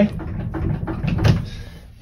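The worn-out gear shifter of a BMW E30 being worked by hand: the sloppy linkage rattles and clunks, with a louder clunk just over a second in. A low steady hum runs underneath.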